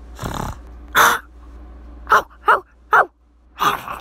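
A child's voice imitating animal cries: about six short, harsh screeches and yelps. The loudest comes about a second in, and three quick ones follow a little after the middle.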